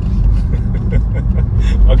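Steady low road and tyre rumble inside the cabin of a moving BMW electric car, with a short laugh near the end.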